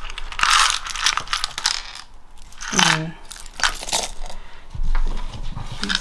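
Small buttons and mini pegs rattling and clattering in a small plastic box as it is shaken and tipped out onto a paper page, in several short rattles and clicks.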